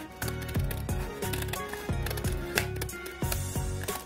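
Scissors snipping through folded paper, an irregular series of short, crisp clicks, over background music.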